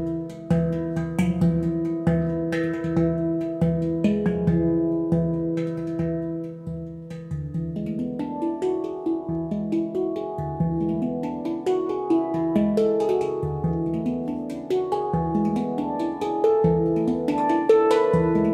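Several Yishama Pantam handpans played with the hands: a steady rhythm of struck steel notes that ring on over one another above a low pulsing bass note. From about halfway through, the notes change more often and the melody moves busily between pitches.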